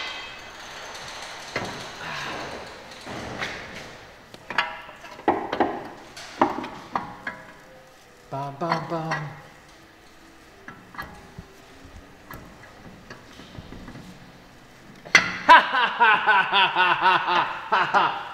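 Scattered light metallic clinks and taps of hand tools and steel parts as a drive shaft is worked into a car's front wheel hub.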